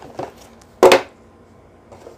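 A single sharp knock of a hard object set down on a wooden tabletop, a little under a second in, with a fainter click just before it.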